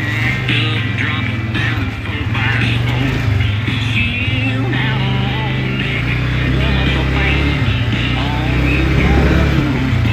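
ATV engine running steadily at low trail speed, mixed with a song with singing.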